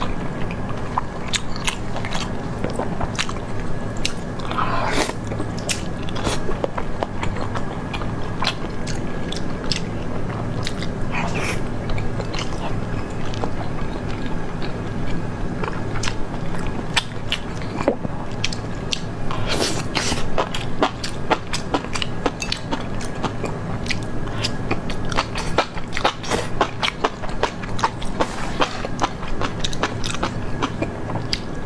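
A person chewing and biting food close to a clip-on microphone, with many short mouth clicks throughout. A faint steady hum sits underneath.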